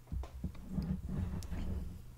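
Handling noise: a few faint clicks and low knocking and rubbing as a clutch disc and a large aluminium round bar are moved about on a workbench.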